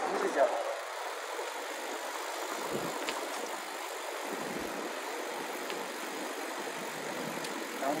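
Steady, even rushing noise of riding an electric-assist bicycle along a paved path: wind on the camera and tyre noise, with a couple of faint clicks.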